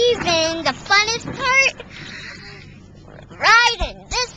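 A child's high-pitched wordless vocal sounds in four short bursts, the pitch sliding up and down, with the faint noise of the moving pickup truck in the gap between them.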